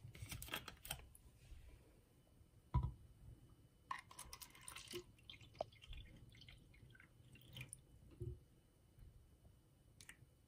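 Water poured from a plastic bottle into clear plastic cups, faint, with crackling of the plastic bottle being handled and one sharp knock about three seconds in.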